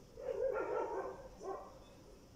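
A dog vocalising in the background: a drawn-out high-pitched cry lasting most of the first second, then a shorter one about a second and a half in.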